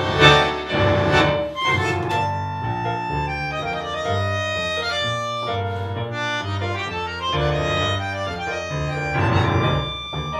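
Live tango played by a trio of bandoneón, piano and double bass: a few strong accented chords in the first two seconds, then sustained bandoneón lines over a stepping bass, with the accents returning near the end.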